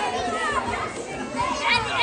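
Many children's voices chattering and shouting over one another, with a few high squeals near the end.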